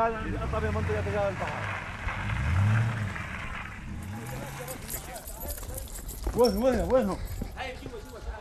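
A vehicle engine revving up, with its low rising pitch about two to three seconds in, over a rumble and road noise. A man's voice is heard briefly at the start and calls out near the end.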